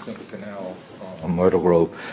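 A man's voice over the meeting microphone: a faint start, then a drawn-out, untranscribed hesitation sound about a second in, just before he speaks.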